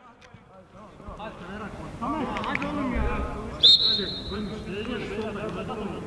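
Players' voices calling out across a football pitch, growing louder after about two seconds, with one short, high whistle blast about three and a half seconds in.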